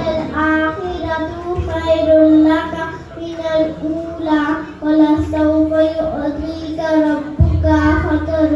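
A young girl singing solo into a stand microphone, amplified, in long held notes separated by short breaths between phrases.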